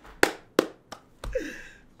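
Three sharp smacks, about a third of a second apart, the last one fainter, in a burst of laughter; then a breathy laugh falling in pitch.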